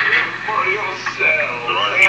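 A voice speaking without clear words, its sound thinned, with the deepest lows and the highest highs cut away.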